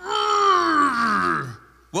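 A man's long, drawn-out straining groan into a handheld microphone, falling steadily in pitch over about a second and a half: an effort sound acting out squeezing hard with the fist. A short spoken word follows near the end.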